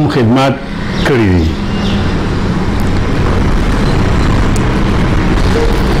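A man's voice in the first second and a half, falling in pitch as it trails off, then a loud, steady noise with a low hum.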